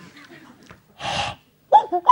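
Vocal sound effects made with the mouth into a handheld microphone. About a second in there is a loud, breathy rush of air. Near the end comes a short pitched sound that rises and falls, the first of several.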